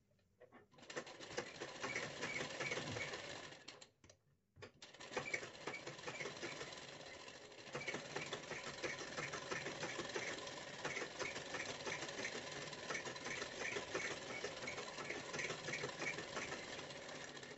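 Domestic straight-stitch sewing machine stitching a seam along the edge of a fabric sleeve, with a steady rhythmic ticking. It starts about a second in, stops briefly near four seconds while the fabric is repositioned, then runs on.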